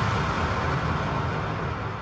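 Techno breakdown with no beat: a wash of synthesised noise over a low rumbling bass, slowly fading away.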